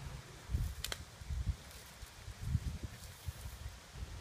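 Footsteps and rustling through long grass, with uneven low rumbling and a single sharp click about a second in.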